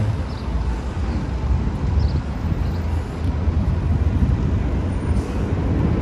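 Steady city street noise, mostly a low rumble of traffic, with no single sound standing out.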